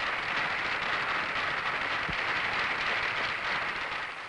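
Spectators applauding: a steady, dense patter of clapping that fades away near the end.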